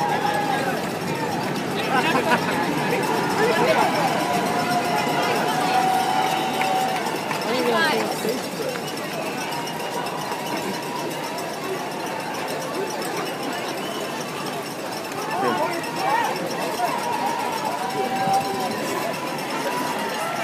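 Roadside crowd of spectators cheering and chattering, with a few long held calls, over the footsteps of a pack of marathon runners on the pavement.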